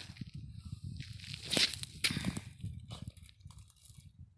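Footsteps crunching on loose gravel, irregular, with a few louder crunches about halfway through.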